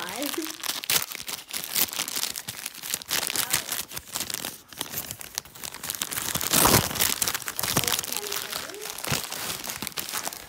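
Christmas wrapping paper being torn open and crumpled by hand: a dense crackling and ripping, loudest about seven seconds in.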